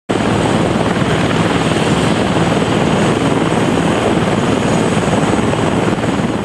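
Eurocopter UH-72 Lakota twin-turbine helicopter running with its rotors turning, loud and steady.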